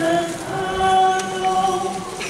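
A crowd of people singing a hymn together in a slow melody of long held notes.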